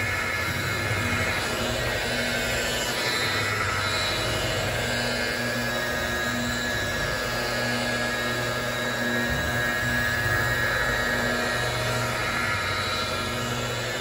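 Makita rotary polisher's electric motor running steadily, its foam pad buffing polishing compound over a painted panel.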